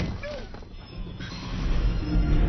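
A brief gliding vocal cry, then a low rumble that swells near the end.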